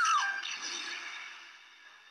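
Soundtrack music from an old black-and-white horror film, played back over a screen share: a short falling tone, then a held chord that fades almost to silence.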